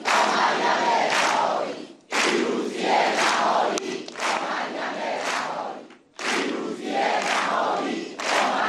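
A large crowd chanting a slogan in unison, shouted in loud phrases of a couple of seconds, with two brief breaks between them.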